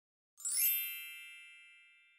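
A single bright chime struck about half a second in, ringing on and slowly fading away, used as an intro sound effect for a title card.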